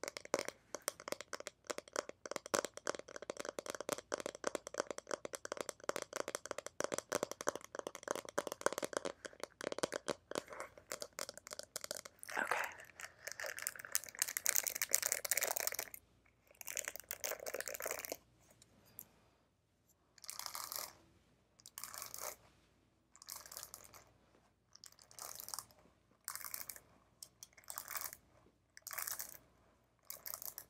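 Stiff-bristled paddle hairbrush scratched and stroked close to the microphone: a dense, rapid bristle crackle for about the first twelve seconds, then separate brushing strokes, roughly one every second and a half.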